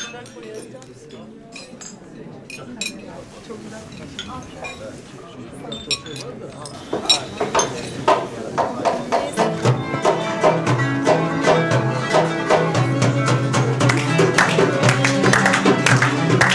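Clinking glasses and dishes over low chatter, then a small live band with an oud and a violin starts playing about seven seconds in and grows louder.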